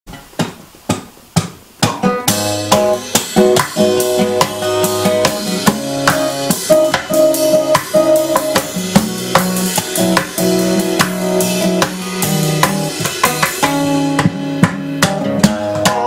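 Acoustic guitar and cajon playing an instrumental intro. A few lone percussion hits open it, then about two seconds in the guitar comes in with strummed chords over a steady cajon beat.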